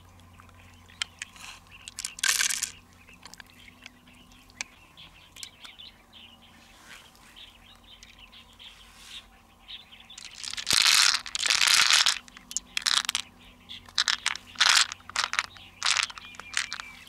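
Close hand-handling noises of mussel shells and loose pearl beads being scooped and moved: short crunching and clattering bursts, the loudest a stretch of about a second and a half a little past the middle, then a run of shorter ones.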